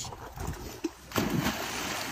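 A dog leaping into a swimming pool: a sudden splash a little over a second in, with the water still splashing afterwards.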